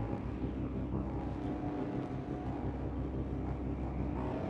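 Dark ambient noise drone: a steady low rumble under a thin hiss, with a few faint held tones.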